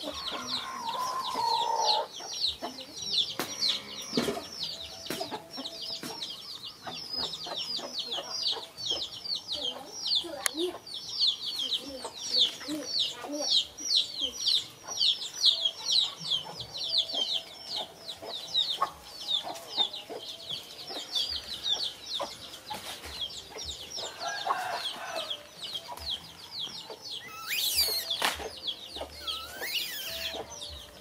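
A bird, likely a chick, chirping over and over: a quick run of short, high, falling chirps, about three or four a second, which stops a few seconds before the end. Near the end a brief, louder, shrill squeal glides upward.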